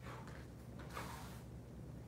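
Faint swooshes from a kung fu saber form being performed, one at the start and a longer one about a second in, over a steady low hum.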